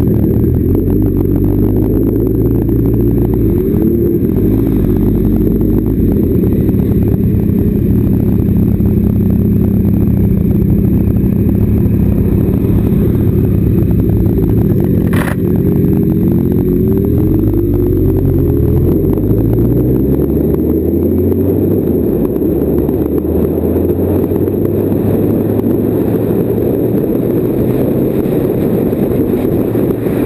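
Motorcycle engine heard from the rider's seat, holding a steady note for the first half, then falling and rising in pitch several times through gear changes around the middle as the bike slows and pulls away again. A single sharp click about halfway through.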